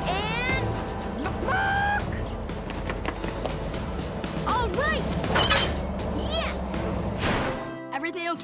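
Animated cartoon soundtrack: action music over a steady low rumble of vehicles, with several short rising cries. Near the end the rumble cuts off and the music changes to a lighter theme.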